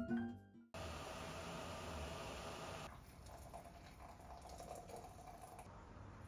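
Background music cuts off, then after a brief gap a faint, steady hiss of an AeroPress being plunged, with coffee pressing through into the mug. The hiss is a little louder for the first couple of seconds, then softer.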